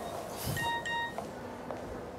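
Mobile phone message alert: a short electronic chime of two quick beeps about half a second in.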